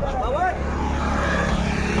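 An engine running steadily with a low hum, with a person's voice briefly near the start.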